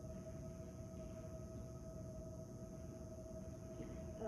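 Quiet room tone: a steady, unchanging hum over a low rumble, with no distinct events.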